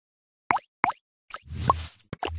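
Cartoon sound effects for an animated logo intro: two quick plops close together, a fainter third, then a swelling whoosh with a short upward tone.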